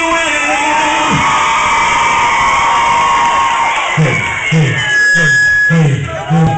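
Live concert crowd cheering and screaming, with long held high screams. About four seconds in, a bass beat from the music starts, about two beats a second.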